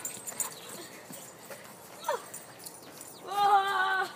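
A short falling squeak about halfway through, then a single high call held at a steady pitch for almost a second near the end.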